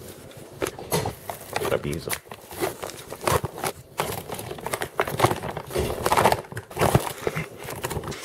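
Plastic dog-treat bag being handled and opened, crinkling and crackling in many short, irregular rustles.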